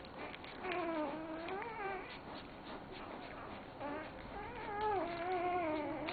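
A newborn Dalmatian puppy whining in two long, wavering calls, the first about a second in and the second starting about four seconds in.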